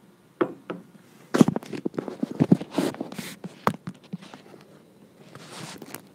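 A handheld recording phone or camera being handled: a quick run of close knocks, taps and rustles against the microphone during the first four seconds, then a softer rustle near the end.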